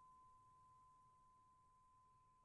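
Near silence, with a faint steady high-pitched tone.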